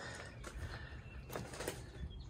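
Quiet background with a few faint soft knocks, the kind of handling noise made while moving the camera.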